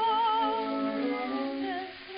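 1908 acoustic-era recording of an operatic soprano with accompaniment: a high note held with wide vibrato for about a second, then the accompaniment carrying on in lower sustained notes. The sound is narrow and thin, with no high treble.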